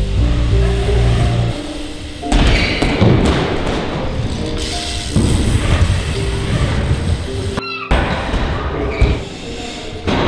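Background music with a beat and held notes, with a few sharp thuds of a BMX bike landing and hitting wooden skatepark ramps.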